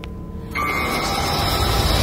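Ominous horror sound effect: a dense, rumbling noise with a few held tones comes in suddenly about half a second in and holds steady, over faint background music.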